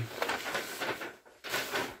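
A large sheet of paper rustling and crackling as it is handled and swung aside.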